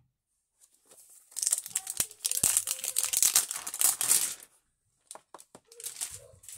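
Paper packaging label being torn and crinkled off a clear plastic multi-compartment case: about three seconds of dense rustling and tearing, then a few light clicks.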